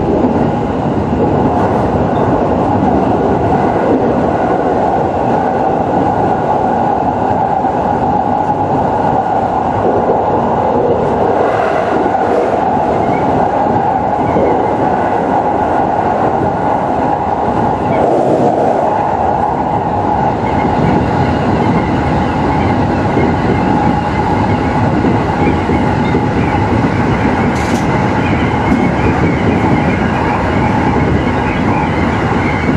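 209 series electric multiple unit running at a steady speed, heard from inside the leading car: a continuous rolling rumble of wheels on rail with a steady mid-pitched hum.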